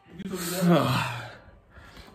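A man's breathy, drawn-out "oh", about a second long, falling in pitch at the end.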